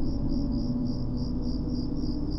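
Crickets chirping in an even pulse, about three chirps a second, over a low sustained drone in the score.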